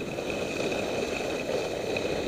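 Steady rushing noise of skiing downhill: skis sliding over groomed snow, with wind passing over the microphone.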